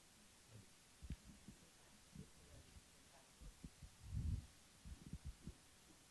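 Near silence broken by scattered soft low thumps, the loudest about four seconds in: handling and drinking noise as a man drinks from a plastic water bottle.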